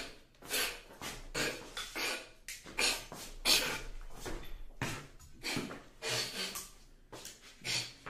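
Irregular knocks, shuffles and rustling from a person moving about close to the microphone in a small room.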